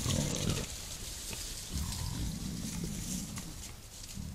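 Wild boar grunting: a few runs of low, rough grunts with short pauses between them.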